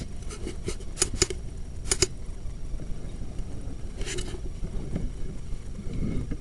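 Sewer inspection camera's push cable being fed into a cast iron drain: irregular sharp clicks and scrapes over a steady low rumble. There is a run of clicks in the first two seconds and another pair about four seconds in.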